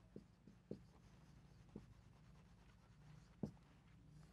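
Faint strokes of a marker pen writing a word on a board: a handful of short, separate scratches.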